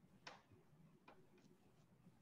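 Near silence broken by four faint, short clicks. The first, about a quarter second in, is the loudest; the other three come over the next second and a half.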